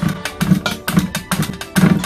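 Aged cheese being rubbed up and down the fine teeth of a plastic hand grater over a steel tray: a rapid run of short scraping strokes, heard with background music.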